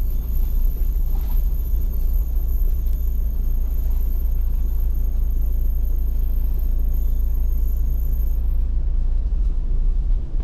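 Car driving slowly over a rough dirt forest track, heard from inside the cabin: a steady low rumble of engine and tyres.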